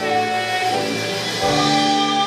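Musical-theatre accompaniment playing held chords, moving to a new chord about one and a half seconds in.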